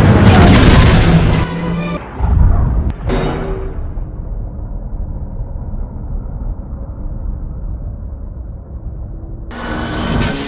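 Film sound effect of a seismic charge detonating. A loud blast with a steady pitched ringing cuts off abruptly about two seconds in, a second blast follows, and a long low rumble fades away. A new loud sound starts just before the end.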